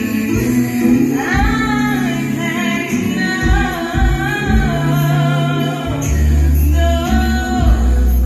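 A woman singing a song live into a handheld microphone over a loud backing track with deep bass, played through a concert PA. The vocal line comes in about a second in, and the bass grows heavier near the end.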